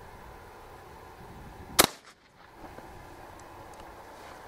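A single 12-gauge shotgun shot about two seconds in, a low-power load firing a homemade motor-commutator slug, over faint outdoor background noise.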